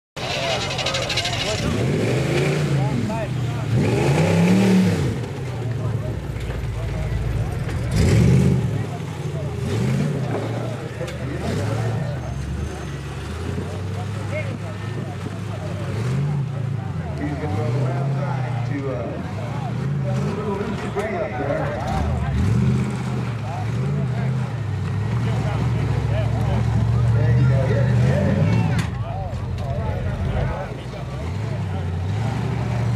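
Off-road buggy engine revving in repeated bursts as it climbs a rocky hill, the pitch rising and falling with each blip of throttle. It is loudest a few seconds in.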